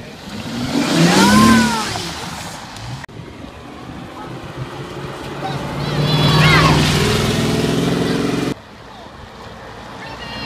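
Cars pulling away past the roadside one after another, their engines accelerating. A Bentley Continental Flying Spur passes first, with a rising engine note. A red sports car follows, its engine note held for a few seconds before it cuts off abruptly. A child's voice calls out over the first car.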